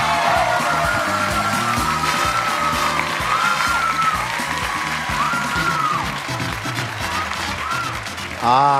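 Game-show music cue playing over a studio audience cheering and clapping, with excited shrieks sliding in pitch through the crowd noise.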